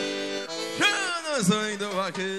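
Live piseiro band music: held accordion chords, then two sweeping pitch slides that rise and drop steeply.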